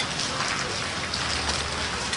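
Steady hiss of rain falling, with a low rumble underneath.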